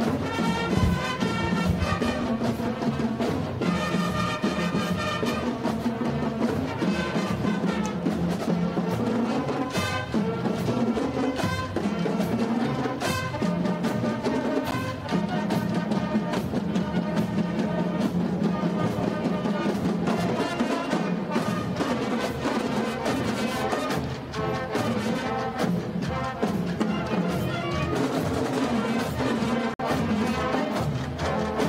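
American high school marching band playing live: brass and drumline together, with sustained horn lines over a steady drum beat.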